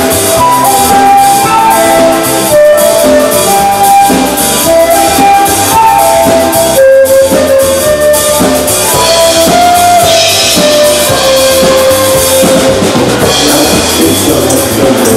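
Live Tyrolean-style schlager music: a flute plays a melody of held notes over a steady drum-kit beat and band backing.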